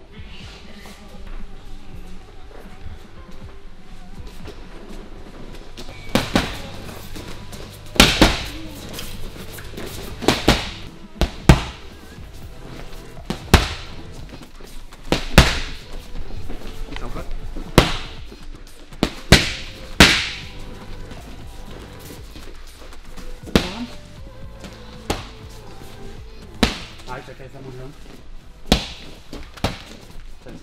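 Background music, over which punches in boxing gloves smack into focus mitts: about fifteen sharp, irregularly spaced hits starting about six seconds in.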